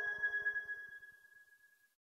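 Closing note of the song's accompaniment: a high, bell-like chime ringing and dying away as the last of the lower music fades, gone just before two seconds in.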